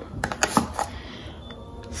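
A few light clicks and knocks from a plastic tub of ricotta cream and other groceries being handled and set down on a table, bunched in the first second.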